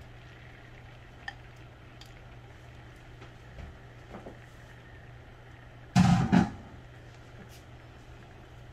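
Beaten eggs frying gently in a nonstick pan: a faint, low sizzle over a steady low hum. About six seconds in comes a brief loud thump in two quick parts.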